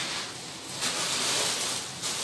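A dressing trolley being wiped clean: a steady rubbing hiss that gets louder about a second in.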